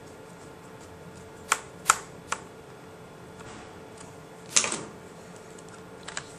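Sharp plastic clicks and clacks of a netbook's case and battery pack being handled: three light clicks about a second and a half in, then a louder cluster of clacks about four and a half seconds in as the battery pack is brought against the case.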